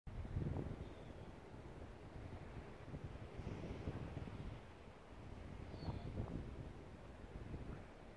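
Wind buffeting the microphone: a low rumble that swells and drops with the gusts.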